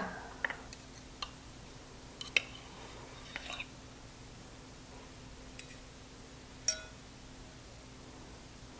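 Fork and knife clinking and scraping faintly against a plate while cutting into a stuffed bell pepper: a few scattered light clinks. One clink near the end rings briefly.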